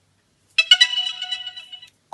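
A short electronic chime: a few quick ringing notes starting about half a second in, fading out over about a second and a half.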